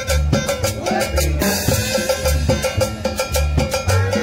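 A live Latin dance band playing an up-tempo number, with a bass line and drum strikes on a steady, even beat.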